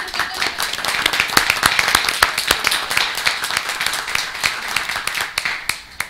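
Audience applauding, starting suddenly and dying away after about six seconds.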